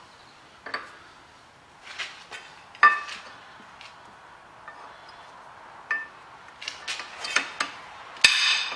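New brake pads being pushed into a Renault Master's rear brake caliper: scattered metal-on-metal clinks and taps from the pad backing plates against the caliper, the loudest about three seconds in with a short ring, and a quicker run of clinks near the end.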